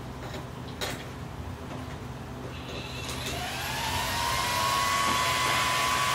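A homemade adjustable power supply for a car battery switching on as its clamps touch the battery: a short click about a second in, then the unit's cooling fan spins up about halfway through with a rising whine and runs steadily, growing louder.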